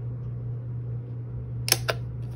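Handheld single-hole paper punch snapping through a cardstock gift tag: two sharp clicks close together near the end, over a steady low hum.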